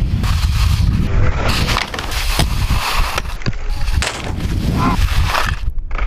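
Skis sliding over snow with wind rushing on the action camera's microphone, then skis scraping and knocking on a snow-park box, with several sharp clattering knocks.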